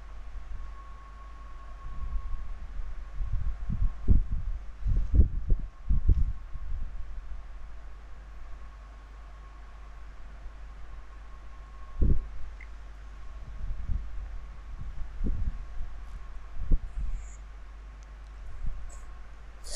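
Irregular low thumps and bumps, several in a cluster a few seconds in and more near the end, over a steady low hum and a faint steady high tone.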